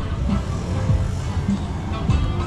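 Music with a heavy bass line playing steadily.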